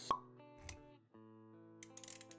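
Animated-intro music with sound effects: a sharp pop just after the start, then held musical notes with a soft low thud. The music drops out briefly about a second in, then resumes, with a few clicks near the end.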